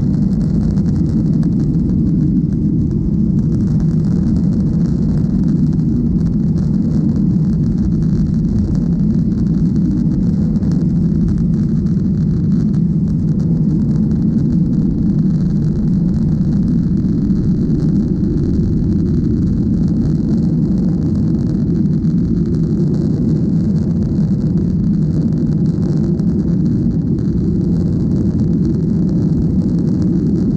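Steady deep rumble of a Boeing 737-800's CFM56-7B engines and rushing air, heard inside the cabin from a window seat while the airliner descends on approach to landing.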